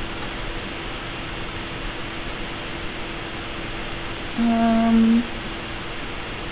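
A person hums a short, steady 'mmm' of under a second, about four and a half seconds in, over the constant noise and low electrical hum of the room.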